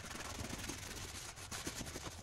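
A closed-cell foam sleeping pad being rolled up by hand, the ridged foam rubbing against itself in a continuous scratchy rustle with small crackles.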